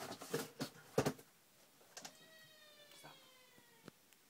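Hands handling a package: a few sharp rustles and clicks, the loudest about a second in. After that comes a faint drawn-out whine that slowly falls in pitch, then a couple of light ticks.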